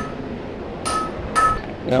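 Three light metal-on-metal clinks, each ringing briefly at the same pitch: one at the start, then two close together about a second and a half in.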